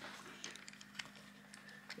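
Faint clicks and light handling noise of a plastic automotive relay and its wiring-harness socket being handled and pushed together, a few small clicks spread through, over a low steady hum.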